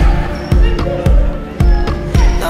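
Background pop music with a steady drum beat, about two beats a second, under held notes; a sung line trails off at the start.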